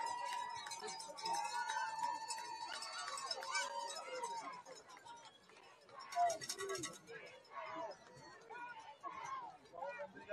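Faint stadium crowd noise: voices and shouts from the stands and sideline. A few held calls sound in the first few seconds, and a single louder shout comes about six seconds in.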